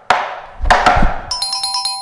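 Metal taps on tap shoes striking a wooden practice board: four sharp strikes in about a second, the forward stamp, shuffle and pull-back of a pullback step. Just after them comes a bright, glittering electronic chime, an edited sound effect.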